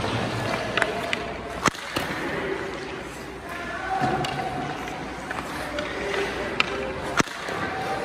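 Ice hockey shots at a goalie: sharp cracks of a stick striking a puck, two loud ones about five and a half seconds apart, with lighter clicks of pucks and sticks between them.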